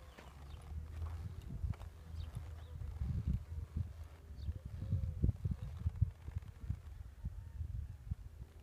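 A horse shifting its feet on straw-covered dirt: soft, irregular hoof thuds, most of them in the middle seconds, over a steady low rumble.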